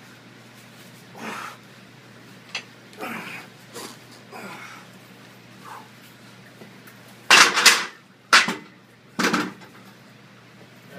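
Heavy, gasping breaths after a set of 100 lb dumbbell presses, then, in the last three seconds, three loud knocks as the heavy hex dumbbells are set down on the rack.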